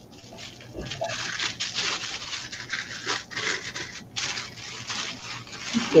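Rustling of the white wrapping around a wine bottle as the bottle is brought up and handled, a dense run of crinkly scratches with a short break about four seconds in.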